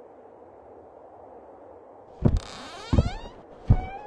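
A steady background hiss, then three heavy thumps about two thirds of a second apart starting about halfway through. A rising whistle-like glide follows the first thump.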